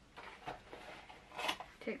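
Faint rustling and scraping of a small cardboard box as its end flap is pulled open, with a few light clicks of the card.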